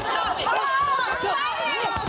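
Several people shouting and yelling over one another without a break, the commotion of onlookers as a fight breaks out.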